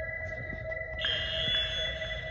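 Background music of sustained electronic tones held steady, with a higher tone layer coming in about a second in.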